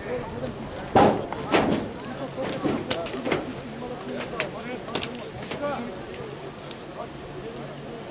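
Men's voices talking and calling out on an open football pitch, with two loud shouts about a second in and scattered sharp clicks and knocks.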